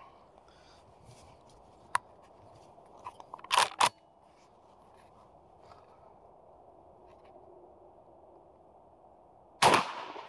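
A single 12-gauge slug shot from a Beretta A300 Ultima Patrol semi-automatic shotgun near the end, a sharp report with a short echo. It is preceded by a few quieter clicks and knocks about two to four seconds in.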